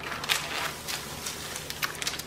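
Clear plastic cover sheet of a diamond painting canvas being peeled back from the sticky glue layer, crinkling and crackling irregularly as the film is lifted.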